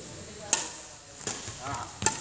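Two sharp cracks about three-quarters of a second apart, the first the louder: a badminton racket's strings striking a shuttlecock during a footwork drill.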